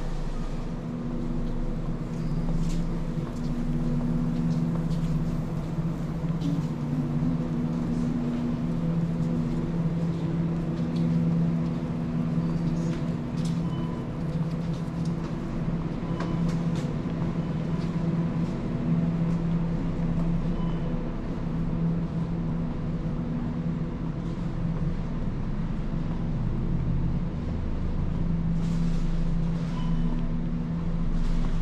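Low, continuous rumble and hum heard while walking through a supermarket. It swells and eases every few seconds, with a few faint ticks.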